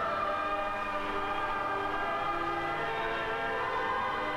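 Organ music playing slow, sustained chords that change every second or so.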